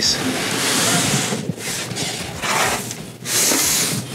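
Large wooden wall-plank panel sliding and scraping across a tabletop, in several long strokes with brief pauses between them.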